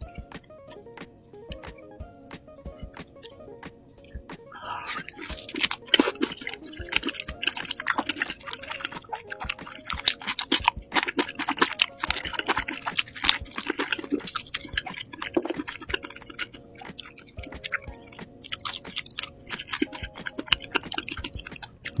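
Close-miked biting and chewing of a grilled lamb rib chop, heard as a dense stream of wet mouth clicks and chewing noises. These start a few seconds in, over quiet background music.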